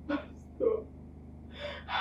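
A woman crying: three short sobs, the last running straight into her speech.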